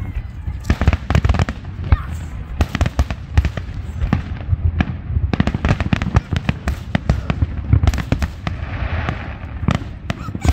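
Fireworks display: aerial shells bursting in a rapid, dense string of bangs, with a brief hissing burst near the end.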